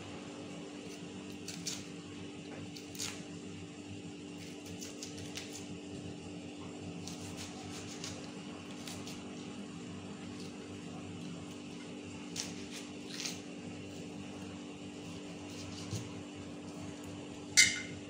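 Quiet handling sounds of lemons being peeled by hand over a ceramic plate: scattered light clicks and taps as the white pith is pulled away and pieces touch the plate, with a couple of louder clinks near the end. A steady low hum runs underneath.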